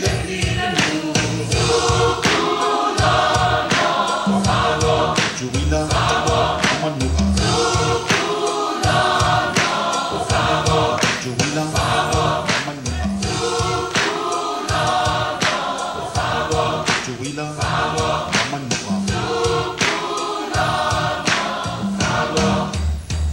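Large Samoan youth choir of men and women singing together, with a steady beat of sharp percussive strokes under the voices.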